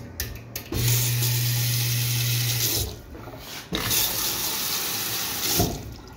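Sloan sensor faucet running onto a stainless steel sink basin in two spurts of about two seconds each, stopping briefly in between as the hand moves under the sensor. A low hum runs under the first spurt.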